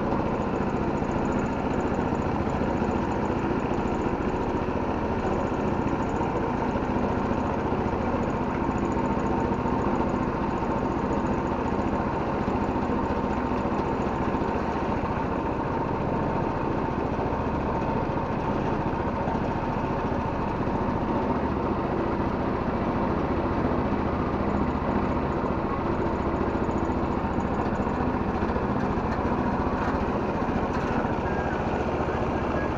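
A boat's engine running steadily at an even speed while the boat is under way.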